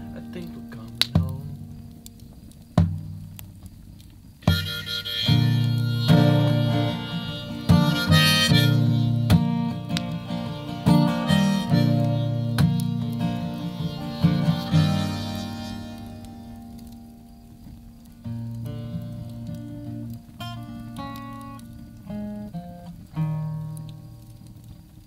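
Acoustic guitar playing the song's wordless outro: a few spaced strummed chords, then a fuller stretch of ringing chords that fades, ending in single picked notes near the end.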